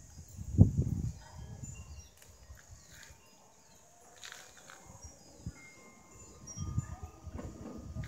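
Outdoor ambience with low rumbling gusts of wind on the microphone about half a second in and again near the end, and scattered short, high chirps and whistles in the quieter stretch between.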